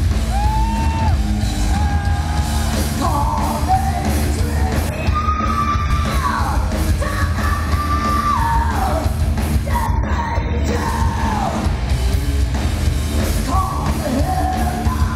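Live heavy metal band playing loud, with guitars and a drum kit under a woman's sung and yelled vocal. Her lines are long held notes that bend and fall away at their ends.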